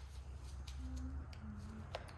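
Faint clicks from a two-part panel adhesive dispensing gun being handled and squeezed hard against the stiff adhesive, over a steady low hum.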